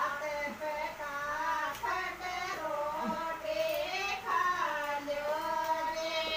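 A high voice singing a slow song with long held notes that waver and glide in pitch, broken by short pauses for breath.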